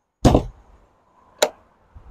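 A fiberglass deck storage hatch lid on a boat's bow shutting with a heavy thump just after the start. About a second later a single sharp click follows as its flush stainless pull latch is pressed down.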